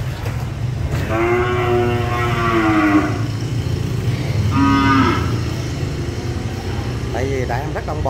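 Young cattle mooing: one long moo starting about a second in and lasting about two seconds, then a shorter moo about a second and a half later.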